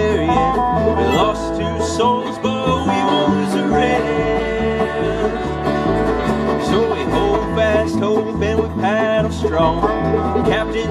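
Live bluegrass band playing an instrumental break between sung verses: plucked string instruments over a bass alternating between two low notes on the beat.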